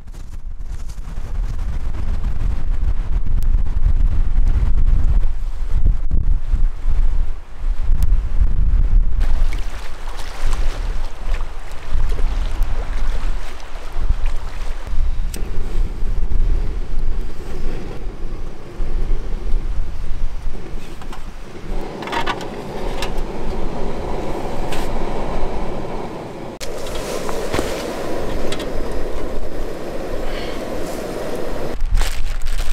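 Wind buffeting the microphone with a heavy low rumble. About halfway through, a canister backpacking stove is lit and burns steadily under a pot of water, its sound rising further about two-thirds of the way in.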